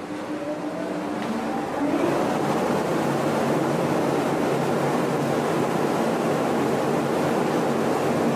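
Large axial exhaust fan, driven by a 22 kW (30 HP) motor on a star-delta starter, spinning up: a faint rising whine and a growing rush of air over the first two seconds. It then settles into a steady rush of air with a low hum as it runs at speed.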